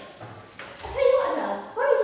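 A teenage actress's voice on stage: a quieter first second, then drawn-out voiced sounds from about a second in.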